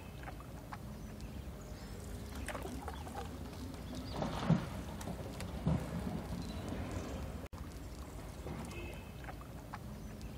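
Canoe paddle strokes in calm river water, with small drips and splashes and two louder splashes near the middle.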